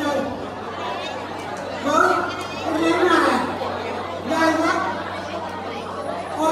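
Speech and chatter in a large hall: a voice over a microphone and public-address system among talking guests.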